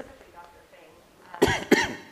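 A person coughing twice in quick succession, about a second and a half in.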